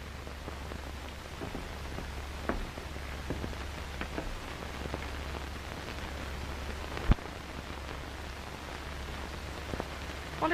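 Steady hiss and crackle of an old film soundtrack over a low hum, with scattered faint clicks and one sharp pop about seven seconds in.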